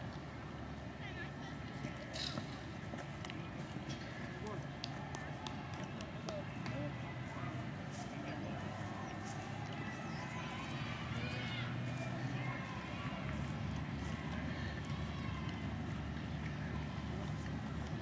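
Indistinct voices of players and onlookers across an open cricket field, none clear enough to make out. A steady low rumble runs underneath, with a few faint clicks in the first half.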